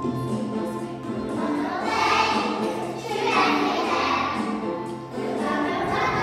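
A group of young children singing a song together over a musical accompaniment, the sung phrases swelling in about two seconds in and again a little later.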